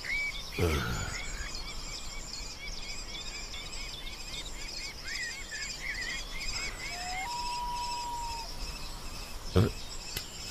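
Birds chirping with rapid repeated calls over a faint high insect-like hum, then a single steady whistled note held for about a second. A sharp thump near the end.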